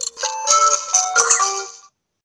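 TV channel bumper jingle: a quick run of bright, bell-like melodic notes stepping up and down, with a few sharp percussive hits, fading out and stopping just before the end.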